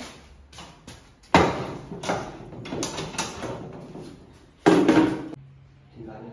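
Footsteps and knocking of carried things in an empty, echoing tiled room, with two loud bangs, one about a second and a half in and one near the end, that ring on briefly.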